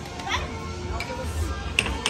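Air hockey mallets hitting the plastic puck across the table: a sharp clack about a second in and a quick double clack near the end, among shouting voices and background music.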